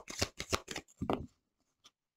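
A deck of large oracle cards being shuffled by hand, overhand: a quick run of card snaps and slides, about six a second, that stops about a second and a half in.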